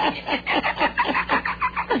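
A man laughing in a rapid, cackling string of short, high 'ha' bursts.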